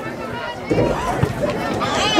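Spectators' voices at an outdoor soccer match: a single call of "good" over general crowd talk.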